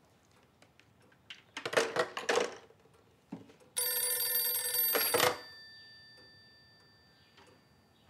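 Old desk telephone's bell ringing once for about a second and a half, then fading out slowly over the following seconds. A brief clatter comes a couple of seconds before the ring.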